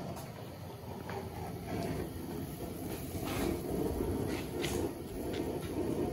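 Pot of venison stew at a rolling boil, bubbling steadily with a few faint pops.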